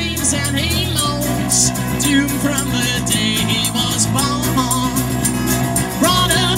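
Live band playing a song through PA speakers: strummed acoustic guitars and electric guitar with a steady beat, and vocal lines weaving over them.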